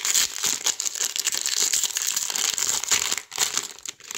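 Foil sticker packet being crinkled and torn open by hand: a dense, continuous crackle of metallic wrapper with short rips.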